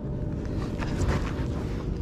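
Steady low rumble of wind and water on the microphone, with a few light knocks and rustles from the angler moving about on a plastic fishing kayak about a second in.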